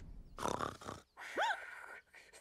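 Cartoon characters' vocal noises: a short grunt about half a second in, then a brief wordless vocal sound that rises and falls in pitch.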